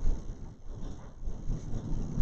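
Low, irregular rumbling background noise with no speech, the kind of room and microphone rumble a lecture-hall recording carries between words.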